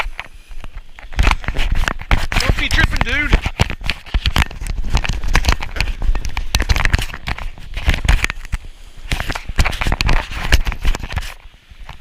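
Irregular knocking and rubbing handling noise from a hand gripping a surfboard right beside its mounted action camera while the board is carried. A voice is heard briefly two to three seconds in.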